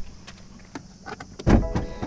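Driver's door of a BMW X5 M Competition opening with a click, followed by light handling noise. About one and a half seconds in there is a thump, then a short steady electronic chime from the car.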